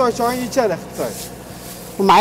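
Men talking, with a faint steady low hum underneath.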